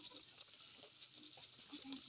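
Near silence: faint light tapping and rustling over a steady high hiss.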